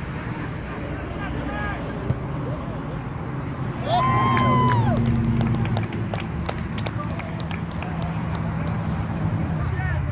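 Voices calling out across an outdoor soccer field during play, with one loud, drawn-out shout about four seconds in, over a steady low rumble.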